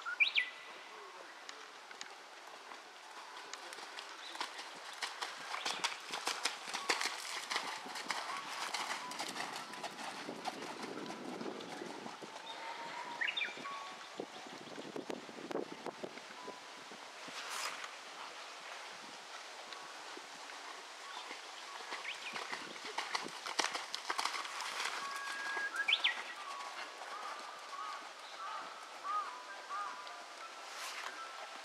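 Hoofbeats of a Thoroughbred cantering on arena sand, coming in runs of quick dull strikes. A few short rising whistled bird calls sound in the background.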